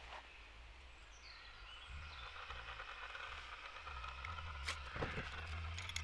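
Skotti portable gas grill being lit: gas flows from the cartridge and a low rumble builds steadily from about two seconds in, with two short clicks near the end as the burner catches.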